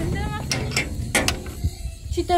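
Metal chain and latch clinking and clanking as a rusty sheet-metal door is unlocked by hand, a few sharp clacks about a second apart, with a short rising squeak near the start.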